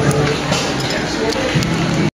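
Indistinct voices and background music in a busy public hall, with no single clear sound standing out.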